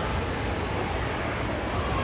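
Steady background noise of a large indoor atrium: an even hiss with a low rumble underneath.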